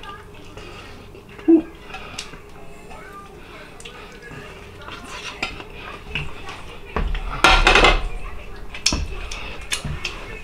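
Light clinks and knocks of a fork and chicken drumsticks on a ceramic plate as it is handled, with a louder rustle about three quarters of the way through.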